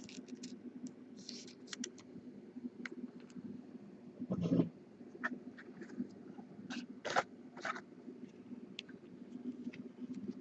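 Trading cards and thin plastic card sleeves being handled on a desk: scattered light clicks, scrapes and rustles, with one louder thump a little over four seconds in, over a steady low hum.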